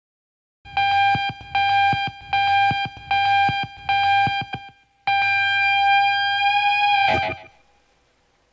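An electronic beep: five short tones at the same pitch, about one a second, then one long tone of about two seconds that cuts off with a short crackle.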